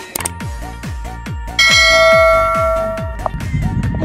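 Background electronic music with a steady beat of about three thumps a second. A click near the start and a loud bell-like chime about one and a half seconds in, ringing for about a second and a half, form a subscribe-button sound effect.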